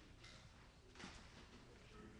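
Faint sharp clicks of carom billiard balls striking one another and the cushions during a three-cushion shot, two of them about a quarter second and a second in, over a low murmur.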